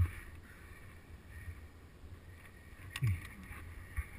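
Wind buffeting the camera microphone: a low, uneven rumble.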